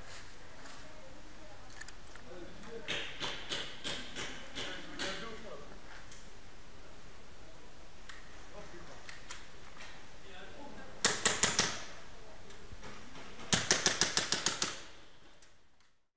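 Airsoft pistol shots: a run of lighter snaps a few seconds in, then two quick volleys of loud, sharp shots near the end, about four and then about eight in rapid succession. The sound then fades out.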